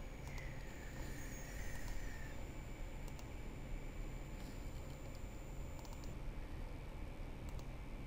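A few faint computer mouse clicks, spread out across the few seconds, over a low steady background hum.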